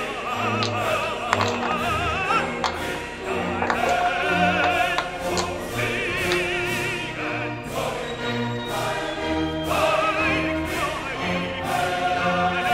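Operatic classical music: a singer with wide vibrato over orchestral accompaniment, laid as a background track.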